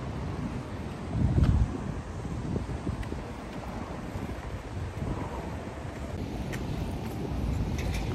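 Wind buffeting the microphone outdoors, a low rumbling noise that swells into a louder gust about a second in, then carries on steadily.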